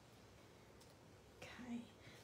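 Near silence: faint room tone, then a brief, soft whisper from a woman's voice about one and a half seconds in.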